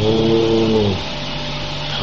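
A monk's voice drawing out the last syllable of the meditation word 'Buddho' on one steady held pitch for about a second. A pause follows, filled by a steady low hum and hiss on the recording.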